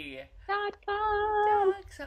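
A woman singing a short phrase: a brief held note, then a longer note held steady at one pitch for most of a second.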